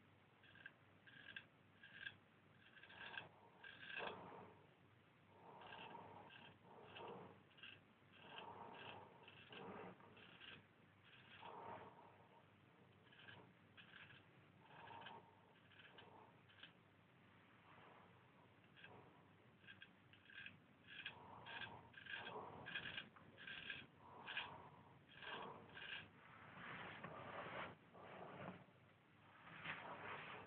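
Straight razor, a Marshall Wells Zenith Prince, scraping through lathered stubble: many faint, short strokes in quick runs.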